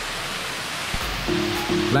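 Steady rush of a waterfall pouring into a pool; background music with sustained notes comes in over it a little past halfway through.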